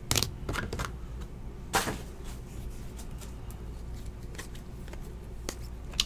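2017-18 Donruss Optic basketball trading cards being handled and flipped through by hand, giving soft rustles and short card clicks, with one sharper click a little under two seconds in.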